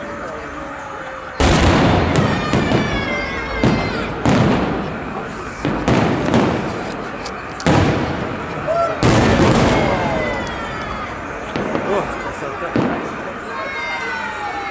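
Aerial fireworks shells bursting overhead in a festive salute: about eight sharp bangs, the first about a second and a half in, each ringing on briefly before fading.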